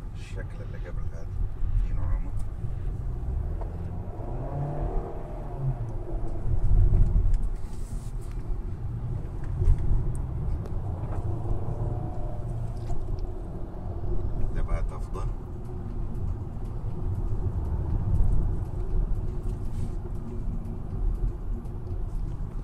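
Interior cabin noise of a 2015 Hyundai Sonata under way: low engine and tyre rumble from its four-cylinder engine and the road, swelling and easing as the car accelerates through the bends.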